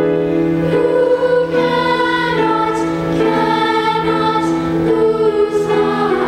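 Choral music: a choir singing long held chords that move to new chords every second or so.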